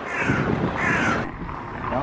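A crow cawing twice in quick succession, the two calls well under a second apart.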